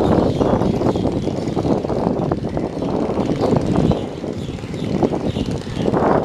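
A boat engine running steadily, a loud continuous drone with a flickering, rushing texture.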